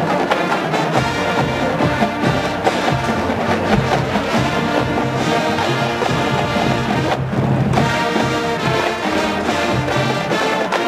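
College marching band playing: brass and drums together in a loud, continuous passage of sustained chords.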